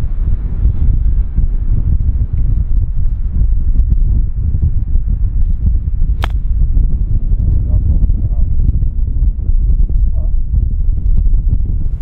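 Wind rumbling on the microphone, with a single sharp click about six seconds in as a golf iron strikes the ball.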